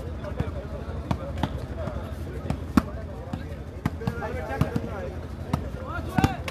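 A volleyball struck by players' hands during a rally, heard as a series of sharp slaps at irregular intervals, the loudest a little under three seconds in. Indistinct voices from the crowd are heard in the background.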